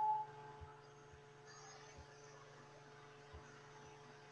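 Heat It craft heat tool running, its fan motor giving a faint, steady low hum.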